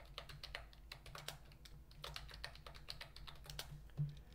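Computer keyboard typing: faint, irregular runs of key clicks as a password is typed in twice, over a faint steady low hum.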